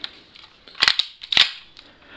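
Plastic spring-loaded 1911-style BB pistol being cocked between shots: two sharp clacks about half a second apart, with a few lighter clicks.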